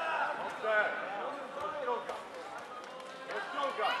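Men's voices calling out and talking in a large sports hall, with faint background chatter.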